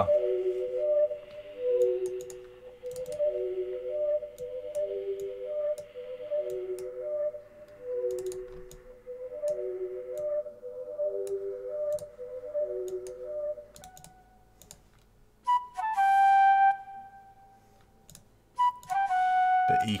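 Software flute and bell melody (SRX Orchestra sounds) looping in FL Studio: a repeating pattern of short notes on three pitches. It stops about 14 s in, and two single held notes sound near the end, with faint clicks throughout.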